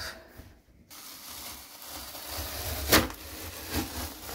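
Handling and rubbing noise, a steady hiss with low rumble, as hands work at a cupboard. A sharp click comes about three seconds in and a softer one near the end.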